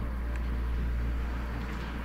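Steady low rumble with a faint hiss above it, no voice and no distinct events.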